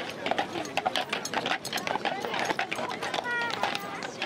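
Harnessed draft horses' hooves clopping on cobblestones as a team is led past, with a crowd talking all around.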